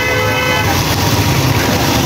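A vehicle horn gives one short toot at the very start, over the steady low running of motorcycle and vehicle engines in street traffic.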